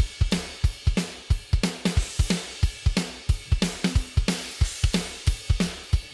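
A programmed rock drum kit from a sampled drum instrument playing back a heavy half-time groove: kick, snare and crash/china cymbals at about 91 beats per minute.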